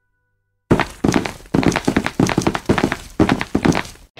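A rapid, irregular series of loud thuds and knocks, starting just under a second in.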